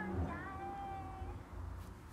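A high vocal note from a voice memo recording being played back: a short gliding start, then the note held for about a second before it fades.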